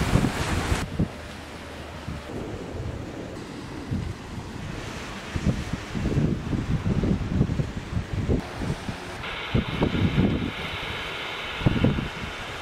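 Wind buffeting the microphone in gusts over the wash of waves breaking on a beach. A steady higher hiss joins about nine seconds in.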